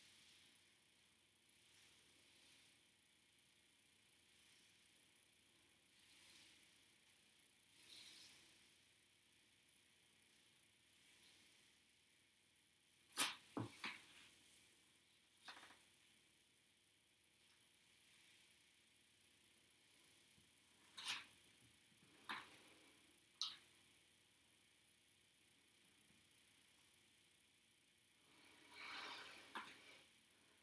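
Near silence, broken by a handful of sharp clicks or taps: a cluster of three or four about halfway through, then three more spaced about a second apart a little later, and a soft rustle near the end.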